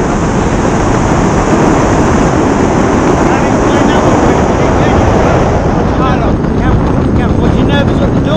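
Steady wind rushing over the camera microphone under an open tandem parachute canopy, with short bits of voice breaking through, more of them near the end.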